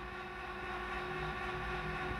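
A faint, steady electrical hum with a low rumble: room tone.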